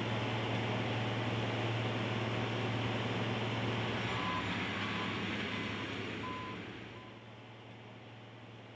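Heavy construction machine running steadily, a deep engine hum under a grinding noise, fading down about seven seconds in. A few faint short beeps sound midway.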